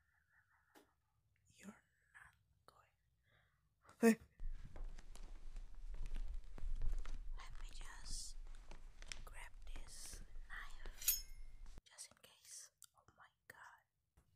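A flat's front door being worked from outside: a sharp click about four seconds in, then several seconds of keys and lock rattling and scraping, with a ringing metallic click just before it stops abruptly. Soft whispering can be heard around it.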